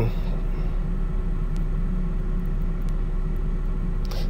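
A steady low background rumble with a faint hum, even throughout, in a pause with no speech.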